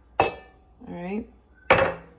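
Spoon and glass relish jar knocking against a stainless steel mixing bowl: a sharp ringing clink just after the start, then a louder scraping clatter near the end as the jar is emptied.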